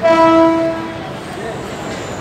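Electric local train's horn giving one short, single-pitched blast, about a second long, right at the start.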